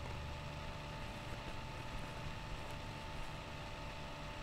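Room tone: a steady hiss with a faint, even, high-pitched whine, and a low hum that fades out within the first second.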